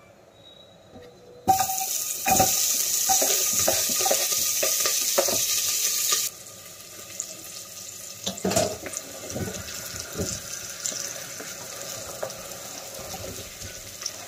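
Chopped onion, green chili and garlic hitting hot mustard oil in a pot: a sudden loud sizzle starts about one and a half seconds in, cuts off abruptly about five seconds later and drops to a quieter sizzle. Short knocks and clatters from the plastic cutting board against the pot run throughout.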